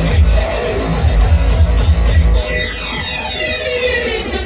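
Uptempo hardcore from a DJ set, played loud over a festival sound system: pounding kick drums that drop out a little past halfway, leaving a sweeping synth effect.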